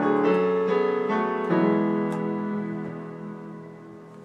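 Keyboard with a piano sound playing a short run of chords, then a final chord held and left to fade out as the song ends.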